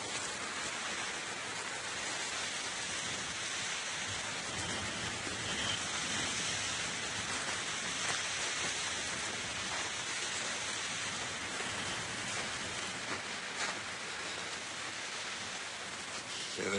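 Steady, even hiss of outdoor winter ambience, with a few faint ticks near the end.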